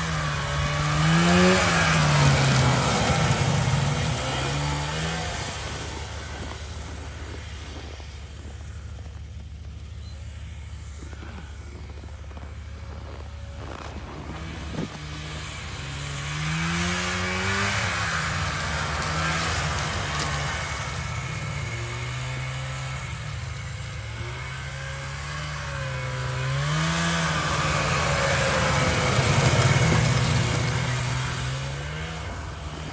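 Vintage John Deere 340 snowmobile's two-stroke engine running at changing throttle, its pitch rising and falling as it revs. It fades as the sled rides away, then grows louder again as it comes back, loudest near the end.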